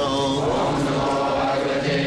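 A man's voice chanting a devotional mantra in a slow, bending melody over a steady sustained drone.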